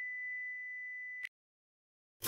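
A steady high-pitched test-tone beep, the kind that goes with TV colour bars. It holds one pitch for just over a second, then cuts off suddenly into silence.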